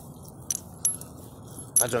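Light metallic jingling: two sharp, high clinks of small metal pieces about a third of a second apart, over faint low background noise.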